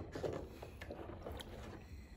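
Faint water sounds of a hand moving in a shallow plastic tub of water, placing small plastic toys, with a few light taps.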